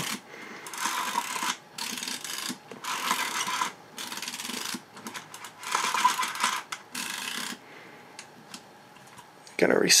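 Rolleiflex Old Standard's film advance being wound in short turns, dragging the paper backing of 120 roll film across the camera's metal film track: a papery rasping rub in about six spurts of a second or less, stopping well before the end.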